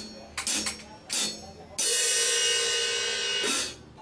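Three short cymbal strikes on a drum kit, then a loud sustained ringing sound with a steady pitch that holds for almost two seconds and cuts off suddenly.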